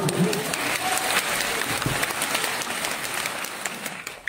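Theatre audience applauding at the end of a performance, a dense clapping that eases off slightly toward the end.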